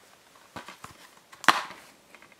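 Plastic Blu-ray keep case being handled and opened: a few light clicks, then one sharp snap about a second and a half in as the case pops open.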